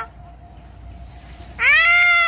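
A long, drawn-out cat meow begins about one and a half seconds in, rising quickly and then held steady. The falling tail of an earlier meow ends right at the start.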